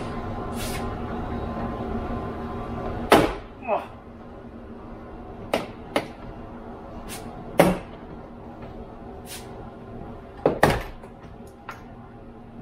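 Plastic retaining clips of a Toyota 4Runner front door trim panel popping loose as the panel is pulled off the door. There is one loud snap about three seconds in, then several lighter clicks and knocks.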